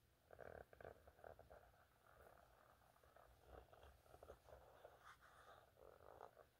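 Near silence: room tone with a few faint, brief scattered sounds.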